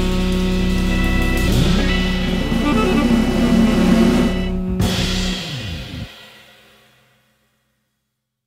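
Jazz trio of organ, drums and saxophone playing the last bars of a swing tune, with a held chord and drums. It cuts off sharply just before five seconds in, and the final chord rings out and fades to silence about two seconds later.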